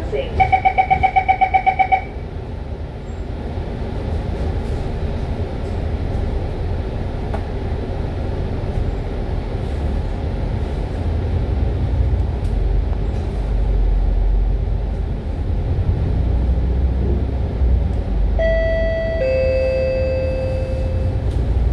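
MAN A95 bus: a rapid beeping warning sounds for about a second and a half at the start, typical of the doors closing, then the diesel engine and drivetrain run with a low rumble that slowly grows as the bus pulls away and gathers speed. Near the end an onboard two-note chime sounds, high note then lower.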